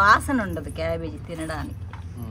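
A woman speaking over a steady low hum, with the light jingle of bangles as her hands move.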